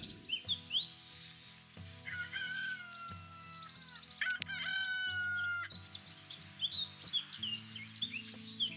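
A rooster crowing twice, first about two seconds in and again, longer and louder, about four and a half seconds in, with small birds chirping, over soft background music.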